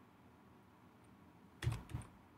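Computer keyboard keystrokes: a short cluster of sharp clicks near the end, after a quiet stretch of faint room noise.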